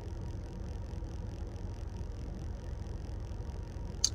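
Steady low rumble of a car cabin's background noise, with a faint hiss and no sudden sounds.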